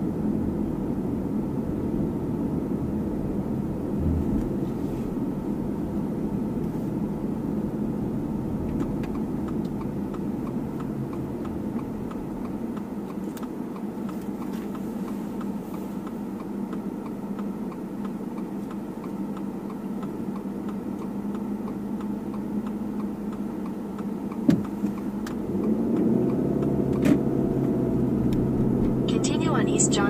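Steady road and engine noise of a car heard from inside the cabin while driving, growing louder in the last few seconds, with a single sharp knock about three-quarters of the way through.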